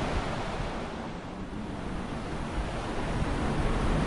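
A soft, even rushing noise that fades a little and then swells back near the end.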